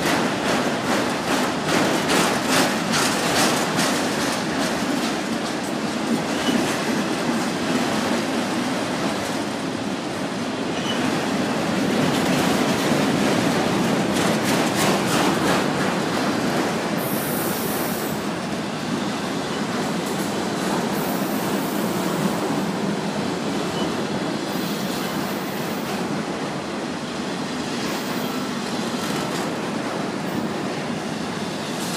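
Loaded freight train of autorack cars rolling past at close range: a steady noise of steel wheels on rail, with bursts of rapid clicking as the wheels cross rail joints in the first few seconds and again around the middle.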